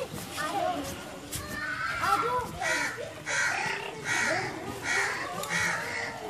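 A bird, most likely a crow, giving a run of harsh, evenly spaced calls, about three every two seconds, starting about halfway through; fainter chirping calls before it.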